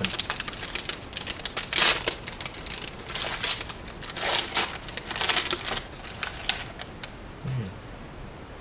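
Packaged fruit pie's wrapper being torn open and crinkled by hand, in a series of uneven crackling bursts.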